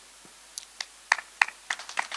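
Scattered hand claps from the crowd, about three a second, the first of an applause that is starting up.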